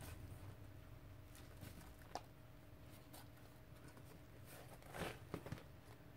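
Near silence with faint handling noise: soft taps and paper rustles as hands handle and lay down a handmade art journal, with a sharper tap about two seconds in and a few more near the end, over a low steady hum.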